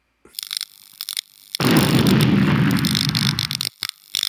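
Sound effects of an animated channel-logo intro: a run of crackling, glitchy clicks, then a loud, low rumbling hit that lasts about two seconds before cutting off, then more crackling near the end.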